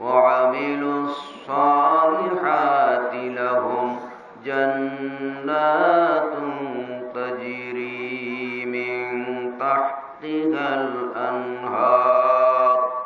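A man chanting in Arabic in a slow, melodic recitation style, holding long notes. He sings in phrases a few seconds long with brief pauses for breath.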